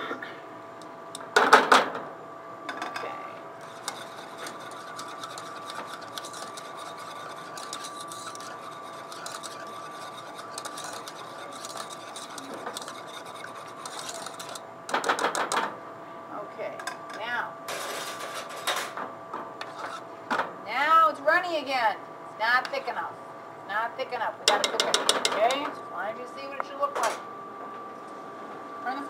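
A wire whisk beating and scraping inside an aluminium saucepan, mixing warm milk into a thick tomato roux base: rapid fine scraping, with a few louder knocks of metal on the pan.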